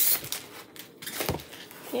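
Plastic packaging rustling and crinkling as a transfer sheet is slid out of it, loudest at the start and then fading to lighter handling noise with a few soft clicks.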